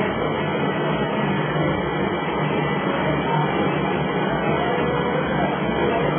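Mini electric LPG transfer pump running steadily while it moves gas from one cylinder to another, a continuous even hum with no change in level.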